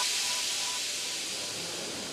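The fading tail of an electronic background track: a steady hiss-like wash with a faint held tone that dies away, the whole slowly getting quieter.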